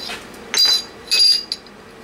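Two ringing metal clinks of steel tooling, a collet adapter and drill chuck, knocking against the Bridgeport milling machine's cast-iron table.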